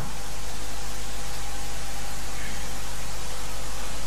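Steady hiss of recording background noise with a faint underlying hum, unchanging in level, in a pause between spoken phrases.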